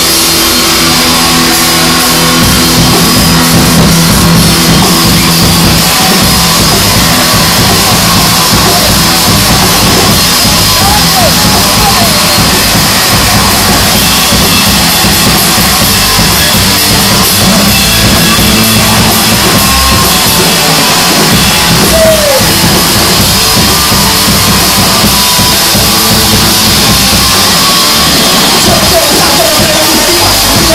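A loud live rock band playing: drum kit and electric guitars going hard, without a break.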